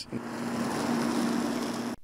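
An engine running steadily: a constant low hum under an even hiss, with no change in pitch or level.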